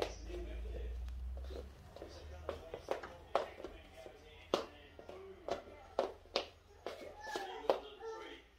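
A small child's feet tapping and stamping on a hard laminate floor, a sharp tap roughly every half second as she turns about.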